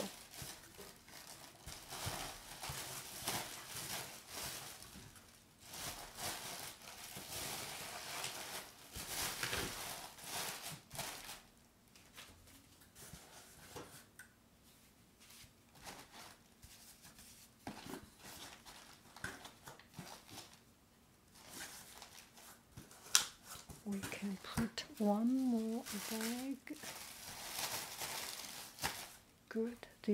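Plastic packing material, a clear plastic bag and air-pillow wrap, crinkling and rustling in irregular handling noise while it is pushed into a cardboard box, with paper rustling as sheets are laid on top. The rustling stops for a few seconds in the middle, and a single sharp knock comes shortly before a brief wavering hum or voice.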